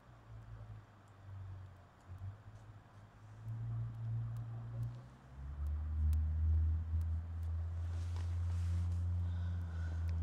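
A low hum that wavers for the first few seconds, then grows louder about five seconds in and holds steady, with a few faint ticks.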